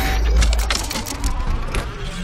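Intro sound effect of small propeller motors buzzing rapidly over a deep rumble.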